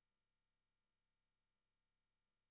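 Near silence: the audio feed is dropped, leaving only a faint steady electronic noise floor.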